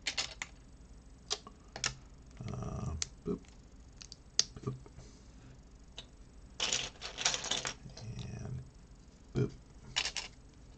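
Loose plastic Lego pieces clicking and clattering as hands pick through and sort them, a scattering of single clicks with a quick run of rattling clicks about seven seconds in.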